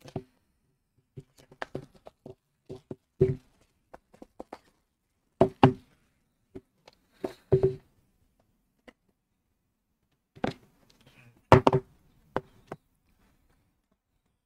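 Small cardboard product box being handled and worked open by hand: irregular taps, knocks and clicks of the cardboard, a handful louder than the rest, as a tight-fitting lid is eased off.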